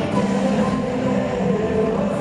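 Live concert music: a male singer singing into a microphone over a band, loud through the stadium PA and recorded from the crowd.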